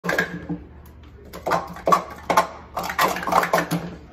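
Plastic sport-stacking cups clacking against each other and the mat as they are flicked up into three-cup pyramids and swept back down in a 3-3-3 sequence: a fast run of sharp clatters about every half second.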